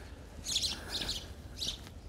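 A small bird giving several short, high chirps, spaced unevenly, over a low outdoor background.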